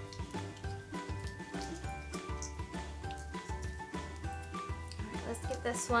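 Background music: held melody notes changing pitch over a repeating, pulsing bass line.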